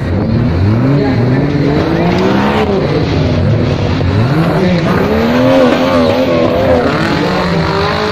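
Off-road jeep's engine revving hard under load on a steep dirt climb, its pitch rising and falling over and over.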